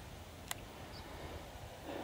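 Quiet background with a faint low rumble and a single short click about half a second in.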